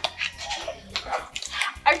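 Plastic snack wrapper crinkling in the hands, irregular rustles and crackles.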